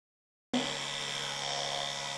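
Electric toothbrush with a small round brush head buzzing steadily while brushing teeth, starting abruptly about half a second in.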